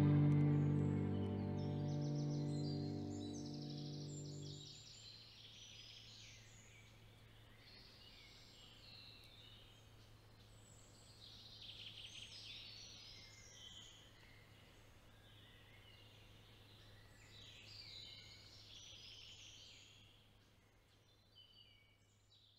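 Background music fading out over the first few seconds, then faint songbirds chirping and trilling over a low steady hum, fading away near the end.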